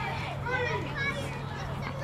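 Spectators shouting and calling out over one another, children's high voices among them, with a steady low hum underneath.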